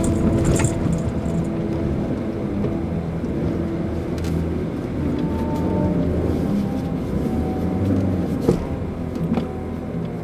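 Mitsubishi Pajero Mini's engine and tyre noise heard from inside the cabin while driving on a snow-covered dirt road, a steady low drone. A few knocks from bumps come through, the sharpest near the end.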